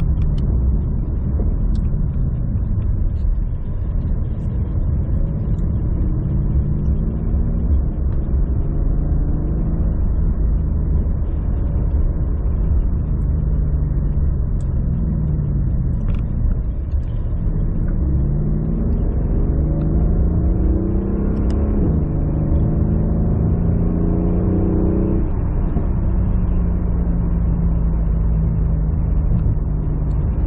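Mercedes-AMG CLS63 S (W218) twin-turbo V8, tuned to 710 hp, heard from inside the cabin while driving. The engine note falls as the car slows, then rises again under acceleration through the gears, with an abrupt drop in pitch at a gear change about two-thirds of the way through. It then holds a steady note near the end.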